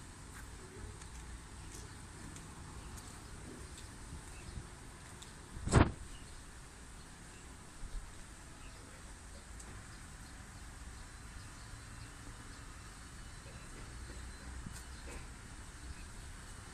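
Faint, steady background noise with one short, loud thump about six seconds in and a smaller knock about two seconds later.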